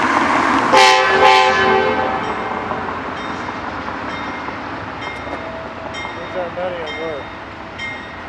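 Amtrak diesel locomotive horn sounding a short blast, a chord of several notes, about a second in. It fades out within a second or so.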